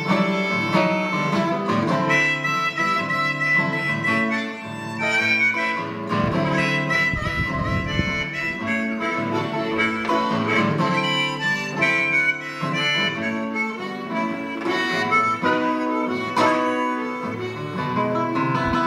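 Instrumental break in a folk song: acoustic guitar accompaniment with a harmonica playing the lead melody in sustained, changing notes.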